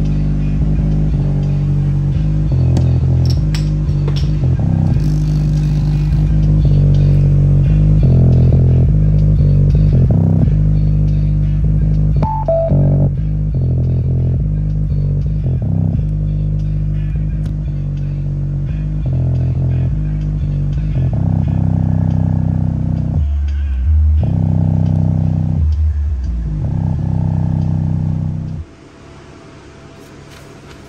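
Westra 4.5-inch woofer in an enclosure playing bass-heavy guitar music loud, with most of the sound in the low end and little treble. The music cuts off suddenly shortly before the end.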